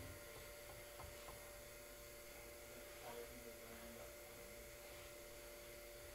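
Near silence: a faint, steady background hum with room tone.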